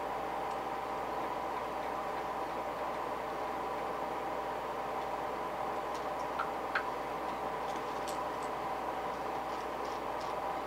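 A steady hum with several faint clicks, the loudest pair just over six seconds in.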